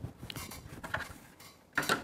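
Bose L1 Compact extension and speaker-array pieces being handled: scattered light clicks and knocks, with a louder knock near the end.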